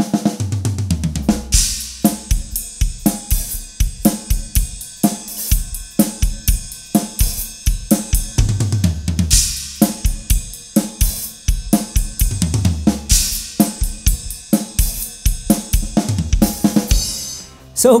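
Acoustic drum kit played in a steady groove of kick, snare and hi-hat, with descending tom fills that land on crash cymbals three times. It stops briefly near the end.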